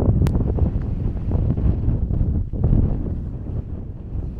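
Wind buffeting the microphone: a loud low rumble that rises and falls, with a sharp click a fraction of a second in.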